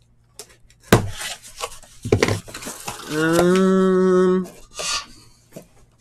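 Cardboard trading-card boxes being handled and slid on a table: a sharp click about a second in, then irregular rubbing and scraping. Around the middle a man hums one steady note for just over a second.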